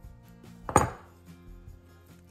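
A metal butter knife set down on a marble countertop: one sharp clack about three quarters of a second in, ringing briefly. Faint background music runs underneath.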